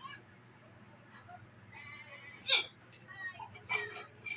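A man hiccuping: one sharp, sudden hiccup about two and a half seconds in, the loudest sound, and a smaller sharp burst near the end.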